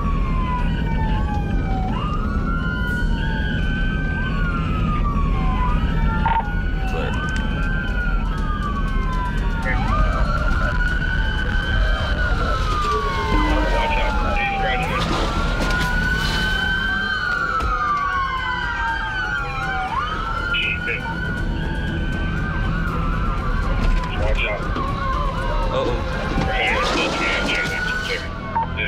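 Several police car sirens wailing at once and out of step, each rising quickly and falling slowly about every two to three seconds. They are heard from inside a moving patrol car over its steady low road and engine rumble.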